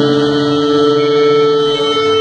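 Live amplified rock band holding a steady, sustained note that rings on as a loud drone, with little drumming.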